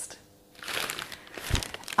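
Paper wrapping crinkling as it is handled, starting about half a second in, with one low thump partway through.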